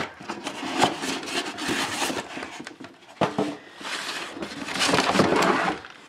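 Cardboard boxes and packaging being handled and rummaged through: rustling and scraping in two long stretches, with a few sharp knocks.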